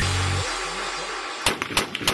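A held low music note that cuts off about half a second in, then two sharp AR-15 rifle shots near the end, a fraction of a second apart.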